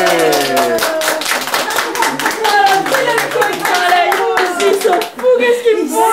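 Hands clapping in a quick, continuous run of claps, with excited voices calling out over it.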